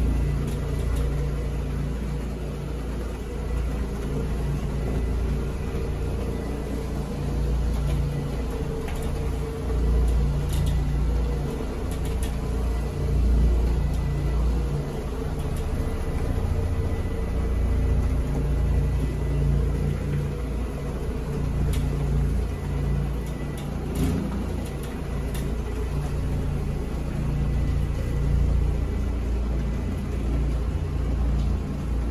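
Electric carpet floor machine with a pad on its base, running steadily as it is worked across the carpet: a constant low hum and rumble, with a few faint ticks.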